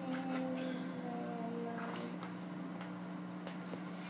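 A handful of light plastic clicks and taps from a child handling and opening a plastic Easter egg, over a steady low hum.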